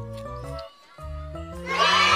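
Children's song backing music: a simple melody of short stepped notes over a bass line, dropping out briefly just before one second. Near the end a much louder sound effect comes in, a rising cry that spreads into a dense, high, wavering noise.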